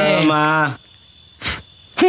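Crickets chirping in the background. A man's voice trails off under a second in, and there is one sharp knock about one and a half seconds in.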